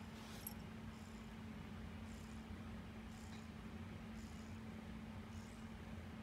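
Kitten purring faintly while kneading and pulling at a plush blanket, with soft scratches of claws in the fabric about once a second.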